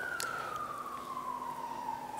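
Emergency vehicle siren, a single faint tone that slowly falls in pitch, in a wailing sweep.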